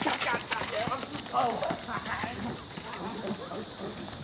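Several people's running footsteps slapping on asphalt in a quick, uneven patter, growing fainter as the runners move away.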